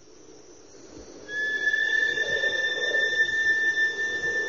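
Electronic intro of an anime opening theme: a hiss swells up, then just over a second in a steady high synthesized tone, with a fainter one above it, sets in and holds over a noisy wash.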